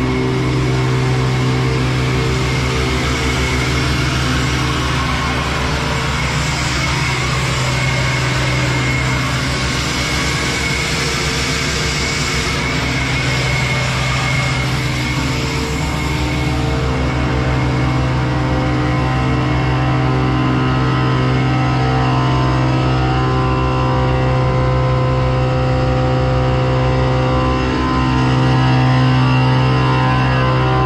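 Semi-truck diesel engine running steadily, with a steady hiss over it and a slight rise in level near the end.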